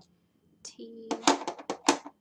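Wooden-block rubber stamps knocking and clattering against each other and the wooden table as they are picked up: a quick run of sharp clicks in the second half, the loudest near the end.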